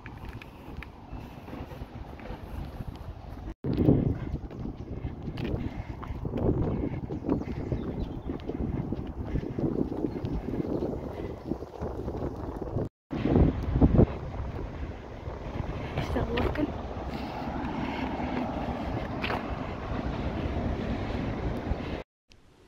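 Wind buffeting a phone's microphone outdoors, a rough, gusty rumble that is loudest just after two brief drop-outs about three and a half and thirteen seconds in.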